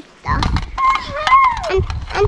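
A child's high voice calling out without clear words, over a low rumble of wind or handling on the microphone.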